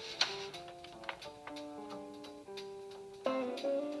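Live jazz ballad: two archtop electric guitars play held chords and single notes that step slowly, with light ticks from the drum kit. A louder new chord comes in near the end.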